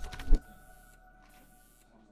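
Short music sting under a TV channel's end ident: a sharp hit about a third of a second in, then held tones fading away with a few faint swishes.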